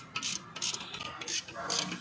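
Ratchet wrench being worked on a suspension bolt, a run of short rattling clicks at about three strokes a second.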